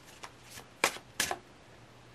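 A tarot deck being shuffled in the hands: a few crisp card snaps, the loudest two about a second in.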